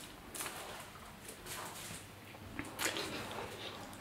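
Quiet room tone with a few faint, scattered clicks and rustles.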